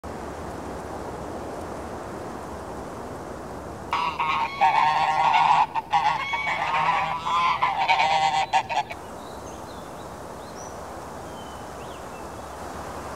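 A group of domestic geese honking together in a dense, overlapping chorus that starts about four seconds in and breaks off about five seconds later.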